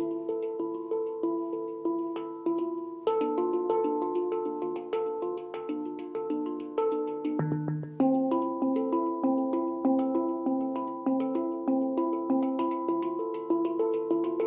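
A Hang (steel handpan) played by hand: a steady run of struck, ringing notes, several a second, each one sounding and fading. The run moves to a new set of notes about three seconds in, and again just before eight seconds, where a deep low note sounds.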